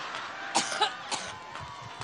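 A woman coughing into a hand-held microphone: three sharp coughs in quick succession about half a second in, part of a coughing spell.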